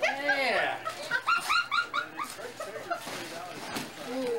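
A woman's high-pitched laughter: a long squeal that rises and falls, then quick rhythmic bursts of laughing that die away.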